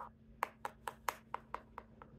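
Light plastic clicks, about four a second, as a Lego minifigure is stepped along a tabletop by hand in a walking motion.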